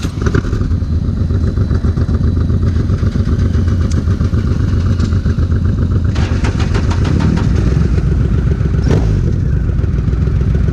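Triumph Rocket III's big three-cylinder engine idling steadily while stationary, with other motorcycles idling close by. About seven seconds in, the engine note briefly shifts pitch.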